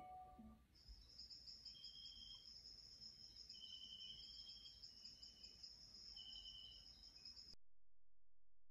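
Faint cricket chirping: a steady high trill with shorter, lower chirps about once a second. It cuts off suddenly near the end.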